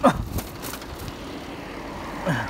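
A bicycle riding along an asphalt road, with steady low rumble of the tyres and wind on the phone's microphone. A brief downward-sliding sound comes right at the start.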